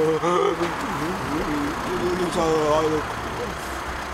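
A car engine running low and steady as the car pulls up and idles, under men's voices.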